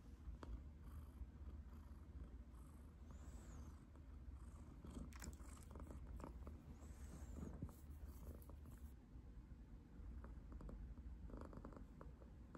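Domestic cat purring faintly and steadily.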